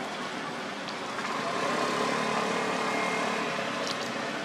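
A passing road vehicle: a steady engine hum that swells from about a second in and eases off near the end, over outdoor background noise.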